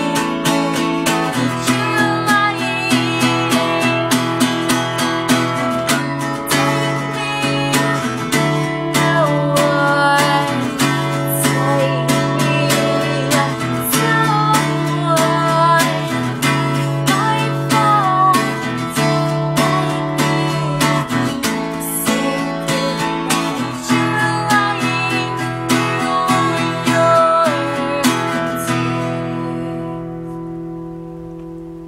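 Acoustic guitar strummed steadily through a repeating chord progression, the chords changing every second or two. The playing trails off near the end as the song closes.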